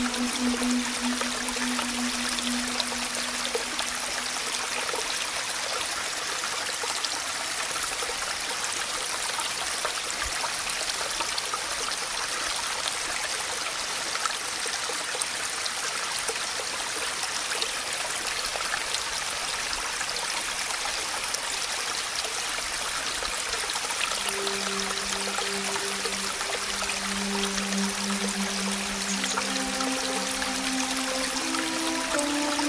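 Steady rain hiss with many small drop ticks. Soft, held low music notes fade out in the first second or two and come back about 24 seconds in.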